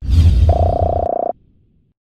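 Sound effects of an end-card animation: a whoosh with a deep rumble that starts suddenly, then from about half a second in a short buzzy, fast-pulsing tone. The tone stops abruptly a little over a second in.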